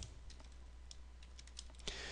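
Faint, scattered key clicks from a computer keyboard as code is typed, over a low steady hum.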